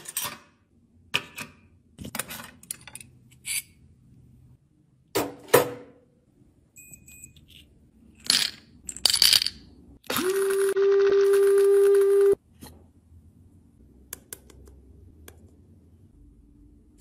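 Small clicks and taps from handling a makeup compact, then a clatter as small pieces of pressed pink makeup tip into a stainless-steel cup. After that an electric blade grinder runs with a steady hum for about two seconds, grinding the broken pieces back to powder, and cuts off suddenly.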